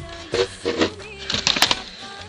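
Handling clatter of a charred, melted laptop being turned over by hand: a run of sharp clicks and knocks about a second and a half in, over steady background music.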